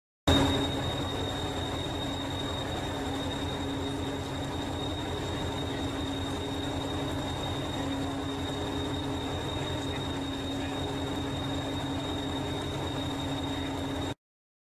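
A stationary train idling: a steady low throbbing rumble with a constant high-pitched whine over it. It starts abruptly and cuts off suddenly at the end.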